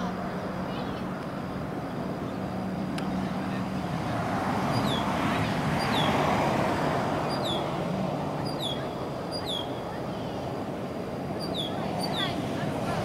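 Outdoor street noise with a steady low hum; a vehicle passes, swelling about four seconds in and fading by eight. From about five seconds in, short falling high chirps repeat roughly once a second.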